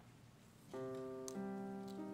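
Piano chords begin about two-thirds of a second in, after a moment of quiet room noise: one sustained chord, then a second about half a second later, the opening of an accompaniment before the choir sings.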